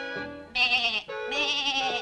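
A cartoon goat bleating twice, two wavering calls in quick succession, over background music.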